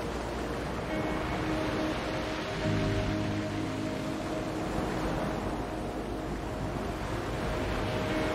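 Soft ambient music of long held notes over a steady wash of ocean waves. A deeper held note sounds for a couple of seconds, about three seconds in.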